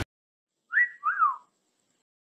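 A two-part whistle sound effect, starting just under a second in and lasting under a second: the first note rises and holds briefly, the second swoops up and back down.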